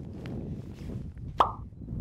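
A short rising 'bloop' of a text-message notification sound about one and a half seconds in, over a low rumble.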